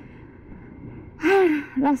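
A person lets out a loud, breathy sigh with a rising-then-falling pitch about a second in, followed by a spoken word, over the low steady noise of the moving motorcycle.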